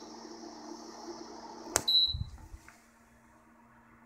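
Portable induction cooktop driving a pancake coil: a steady low hum with a faint high hiss, then a sharp click and one short high beep about two seconds in, after which the hum fades out. The cooktop is cycling between an error and running.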